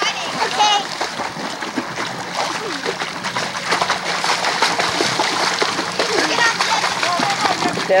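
Steady splashing and churning of pool water as a child swims, kicking his legs at the surface.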